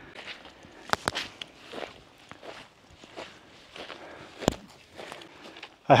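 Footsteps of a hiker walking over rough, dry moorland ground, an irregular run of soft scuffs with a few sharp clicks, the loudest about four and a half seconds in.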